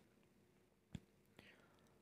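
Near silence: faint room tone with a low steady hum, broken by one short click about a second in and a fainter one shortly after.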